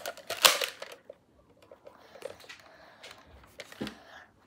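Orange Nerf Elite pistol being handled: a short, sharp noisy burst about half a second in, then faint scattered plastic clicks and rustling.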